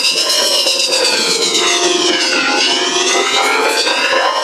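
Loud, effects-processed logo sound: a dense stack of tones over a harsh noisy layer that slides down in pitch for about two seconds, then glides back up.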